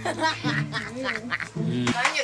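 A man's voice talking, with background music underneath.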